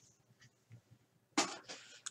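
Faint handling of cardboard trading cards from a vintage wax pack, with a few soft ticks and then a brief card rustle or slide about one and a half seconds in.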